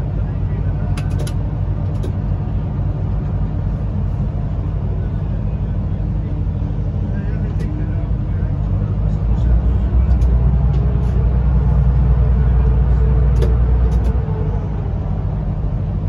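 Electric train running through a long rail tunnel, heard from inside the driver's cab: a steady low rumble that grows louder for about five seconds from roughly ten seconds in, with a few sharp clicks.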